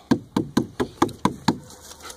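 A dog lapping water from a plastic kiddie pool: a quick run of about seven wet laps, roughly four a second, that stops shortly before the end.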